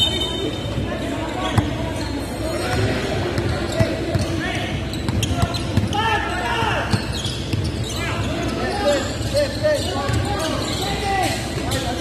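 A basketball bouncing on a hardwood gym floor, single thuds every second or two. Voices and chatter carry on around it, echoing in the large gym hall.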